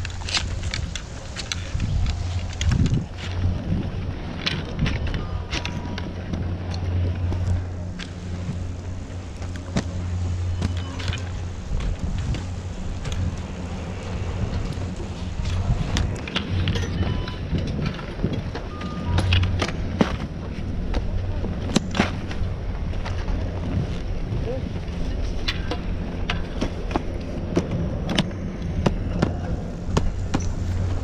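A steady low machine hum runs throughout, with scattered sharp clicks and clacks of skis and poles as a skier shuffles slowly across packed snow.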